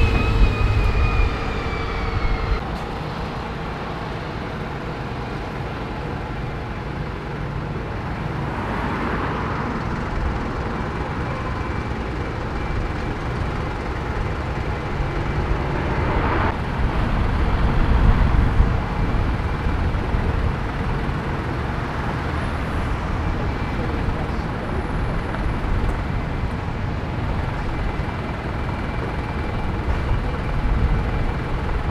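A single-decker bus drives past close by, its engine rumbling and a high whine falling in pitch over the first two seconds or so as it moves away. Then steady street traffic rumble with a bus waiting at the stop.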